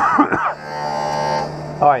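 A man coughing, a short rough cough lasting about half a second, over a steady electrical hum.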